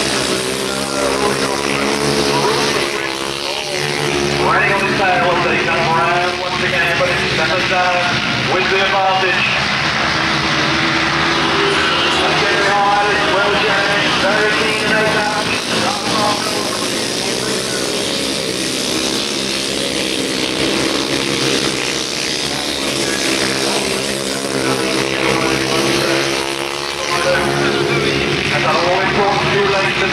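Solo grasstrack racing motorcycles' single-cylinder engines running hard at race speed around the track, rising and falling as the bikes pass. An indistinct public-address voice is heard over them at times.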